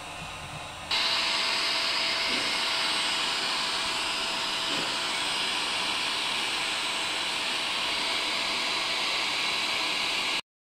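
Heat gun blowing hot air: a steady rushing hiss of air from its motor-driven fan and nozzle, with a faint steady whine under it. It starts suddenly about a second in.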